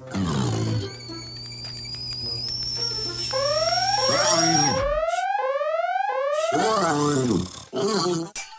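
Cartoon soundtrack of music and sound effects: a high held tone that slowly climbs, then a run of about five quick rising sweeps, mixed with a robot character's short wordless vocal sounds.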